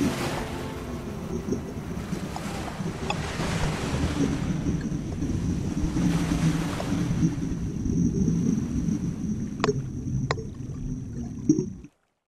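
Muffled rush and rumble of water and scuba exhaust bubbles, heard through a GoPro's waterproof housing just after it goes under. A faint thin steady tone runs underneath, with two sharp clicks near the end before the sound cuts off.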